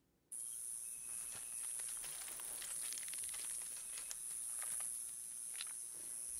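Forest ambience from a film soundtrack: a steady high-pitched insect drone that starts suddenly about a third of a second in, with faint scattered ticks and crackles.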